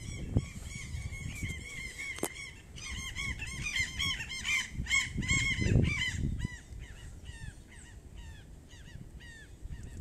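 A flock of birds calling from the trees: many short, repeated arched calls overlapping in a busy chorus that thins out and fades over the last few seconds. A low rumble comes in around the middle.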